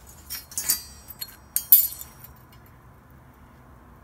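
Pieces of steel clinking: a small drilled steel template plate and a flat steel bar knocked together and set down on a concrete floor, with a short metallic ring. A few light clinks come about half a second in, and a louder cluster follows near the two-second mark.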